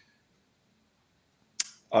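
Near silence in a pause of talk, broken about one and a half seconds in by one short, sharp click, followed at once by a man starting to speak.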